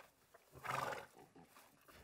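A short horse whinny, a single high call of about half a second, just over halfway through.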